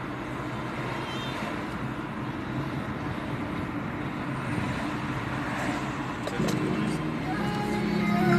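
Steady road and engine noise heard from inside a moving car. Music comes in faintly about six seconds in and grows louder toward the end.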